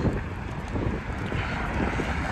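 Wind buffeting a phone microphone outdoors: an uneven, gusty low rumble.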